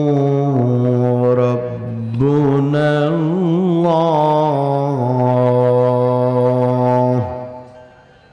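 A man reciting Quran in the melodic tajwid style, holding long drawn-out notes with ornamented turns between them. The voice breaks off about seven seconds in.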